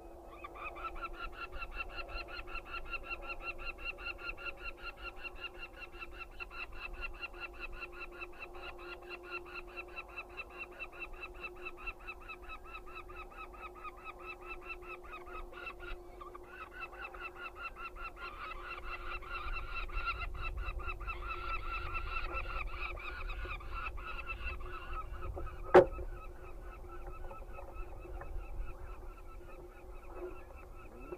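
Peregrine falcon chicks calling, a fast, unbroken run of harsh repeated calls that swells and eases and thins out near the end. A single sharp knock about 26 s in stands out above them, over a steady low hum.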